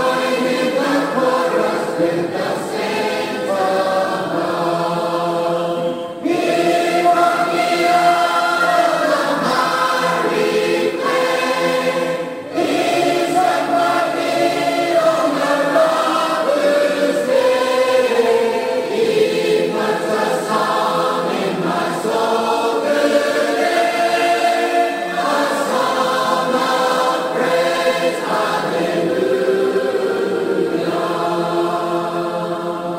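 Congregation singing a hymn a cappella in parts, many voices together with no instruments, pausing briefly between phrases twice in the first half.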